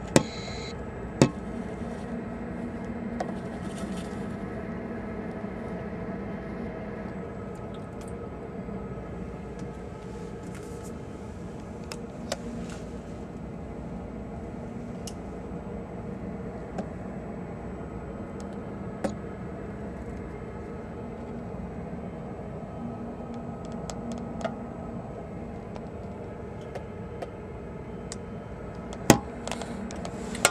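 Steady low hum of a cruise ship's machinery, made of several unchanging tones, with a few sharp clicks about a second in and again near the end.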